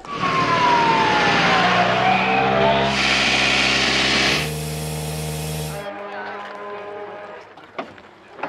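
Rally car engines running loud with a hiss, and a whine that falls in pitch over the first two seconds. The sound changes abruptly in steps and cuts off about six seconds in, leaving a quieter engine hum.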